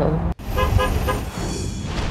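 A car horn giving several short toots in quick succession, over the low rumble of road traffic.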